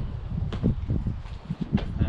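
Wind buffeting the microphone in a steady low rumble, with two short knocks of footsteps, one about half a second in and one near the end.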